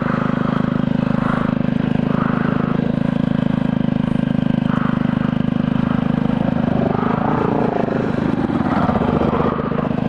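A small motorbike engine idling steadily close by, with quick even firing pulses. About seven seconds in, a second dirt bike's engine revs up and down as it tackles a steep hill.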